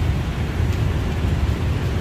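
City street traffic, mostly motorbikes, heard as a steady low rumble with no single event standing out.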